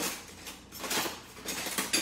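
Metal utensils clinking and clattering as they are handled, in a few short knocks: at the start, around a second in and near the end.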